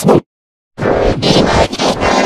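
Heavily processed, distorted audio edit with a scratch-like texture. It cuts out abruptly to dead silence just after the start, then comes back dense and loud for the rest.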